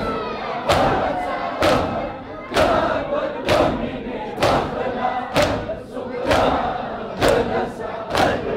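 Large congregation of men performing matam, striking their chests with their hands in unison about once a second, with massed male voices chanting and calling out between the strikes.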